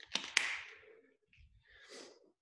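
Two sharp clicks in quick succession as a plastic water bottle is handled just after a drink, followed by a breathy exhale that fades over about half a second; a softer breath comes near the end.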